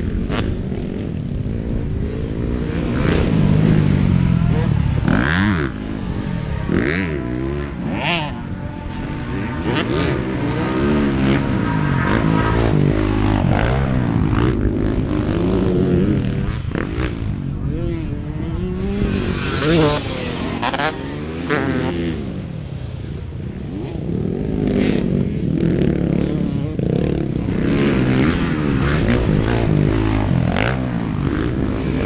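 Motocross dirt bike engines revving hard and backing off over and over as the bikes take the jumps, the pitch rising and falling with each throttle blip.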